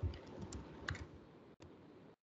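Computer keyboard typing: a handful of separate keystrokes.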